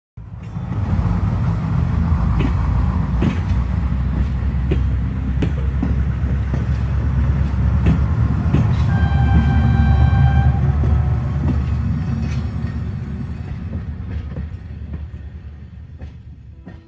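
A train rumbling past with scattered sharp clicks from the wheels, one long blast of its horn at about nine seconds, then the rumble dies away.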